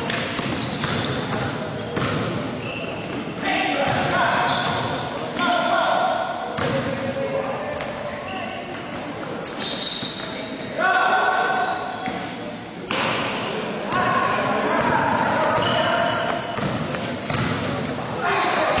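A basketball is dribbled and bounced on an indoor court, with repeated short thuds. Unclear voices of players and spectators carry over it, echoing in a large hall.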